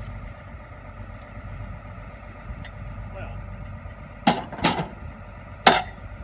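Three sharp metal clanks from a high-lift farm jack being handled and set down, the first two close together in the second half and the third near the end, over a steady low rumble.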